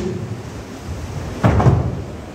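A single dull thump about one and a half seconds in.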